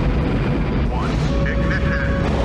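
Film sound of a Saturn V rocket's engines at ignition and liftoff: a loud, dense, steady blast of noise, heaviest in the low end.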